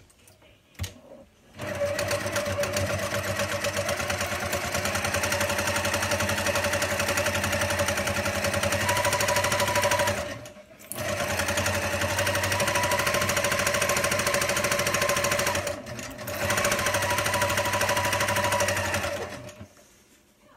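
Electric sewing machine stitching a seam through layers of cushion-cover fabric, starting about a second and a half in and running steadily in three stretches, with two brief stops, the first about halfway through and the second a few seconds later.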